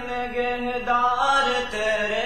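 A solo male voice singing a college anthem unaccompanied into a microphone, in long held notes that slide from one pitch to the next with a short break near the end.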